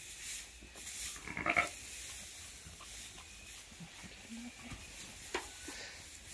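A sheep bleats once, briefly, about a second and a half in, over the dry rustle of hay being pushed into a metal hay rack.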